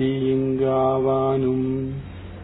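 A man's voice chanting a devotional prayer verse, drawing out one long syllable on a single steady pitch.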